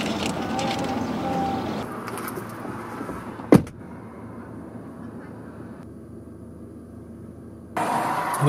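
Road noise inside a moving car's cabin, then a single sharp thump a little past the middle, a car door shutting, followed by a quieter steady hum from the stopped car.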